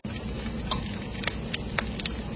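Garlic-herb butter sizzling in stuffed snail shells as they cook on foil, with scattered sharp pops over a steady low hum.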